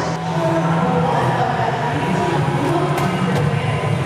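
Steady din of a robotics competition arena during a match: a constant low hum with crowd noise, broken by a few sharp knocks.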